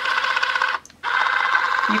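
Spherificator's small electric motor running with a steady high whine as it dispenses coffee drops into the calcium bath, broken by a brief gap about a second in.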